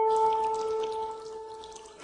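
A long horn note held at one steady pitch, fading away over a faint rushing hiss.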